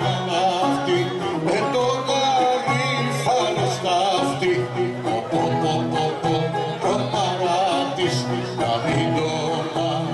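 Live Greek folk dance music for the kagkelari: a violin plays the melody alongside singing voices, over a steady low accompaniment.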